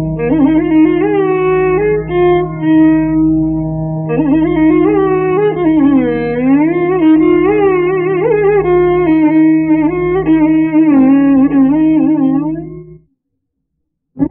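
Carnatic violin playing a slow melody in raga Kanada, the line sliding and bending through ornamented gamakas over a steady drone. The music cuts off suddenly about thirteen seconds in.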